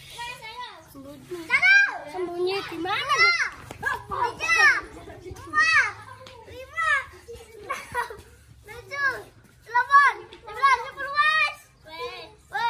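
Several children shouting and calling out at play, a string of short high-pitched calls that rise and fall in pitch, with the loudest calls about two seconds in and again about ten seconds in.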